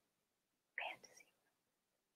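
Near silence, broken about a second in by one brief soft whisper from a woman.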